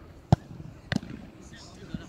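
A football struck hard with a sharp thud, then two fainter ball thuds about half a second and a second and a half later as the shot is met at the goal.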